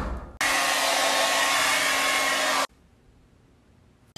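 An electric blower motor runs with a steady rushing whoosh over a low hum. It starts abruptly about half a second in and cuts off sharply after about two seconds.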